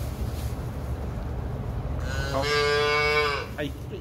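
A young calf bawling once: a single long, high-pitched moo lasting just over a second, starting about two seconds in, over a steady low rumble.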